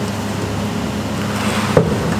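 Metal fuel tank being shifted and handled by hand, rubbing with one short knock near the end, over a steady fan hum.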